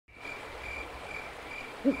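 Crickets chirping, a faint high chirp about twice a second over a low rumble, with a short owl-like hoot starting just before the end.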